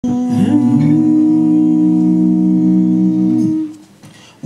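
Several male voices humming one long held chord in close harmony, with no instruments; the voices slide onto their notes in the first half second and fade out near the end.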